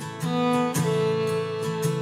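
Country music instrumental passage between sung lines: acoustic guitar strumming chords, with a fiddle sustaining notes.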